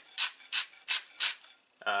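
A Trudeau salt mill twisted by hand, grinding sea salt in four quick strokes about three a second.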